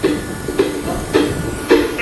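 Steady, loud rushing hiss of a snowmaking cannon running, with music coming in under it as a repeating note pattern about twice a second.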